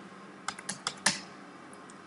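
Computer keyboard keys tapped in a quick run of about five keystrokes, from about half a second to just past a second in.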